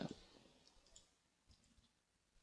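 Near silence with a few faint computer mouse clicks, scattered irregularly.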